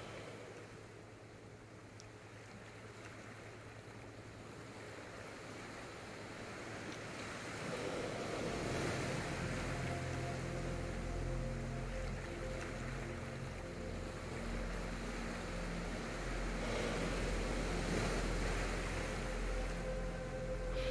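Ambient meditation sound piece: a soft rushing like ocean surf, joined about eight seconds in by sustained low drone tones that hold to the end.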